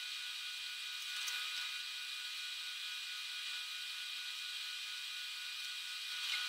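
A steady hiss with a few faint, constant hum tones and no low end, like machine or room noise.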